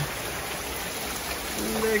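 Heavy rain pouring steadily onto a concrete driveway, pavement and lawn. A man's voice begins near the end.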